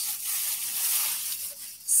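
Rustling of clothing and a plastic bag as garments are handled and pulled out, a steady crinkly hiss that fades near the end.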